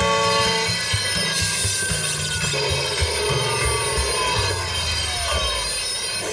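Steel train wheels screeching and grinding on the rail under hard braking, a cartoon sound effect with a squeal that falls in pitch in the second half, over background music.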